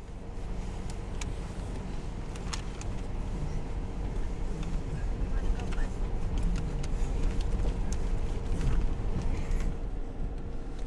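A motor vehicle running steadily, heard from on board: a low engine and road rumble with a constant hum. It fades in at the start, with a few faint clicks over it.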